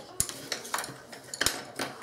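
A few light clicks and taps of coloring sticks and pencils on a tabletop, the sharpest about a second and a half in.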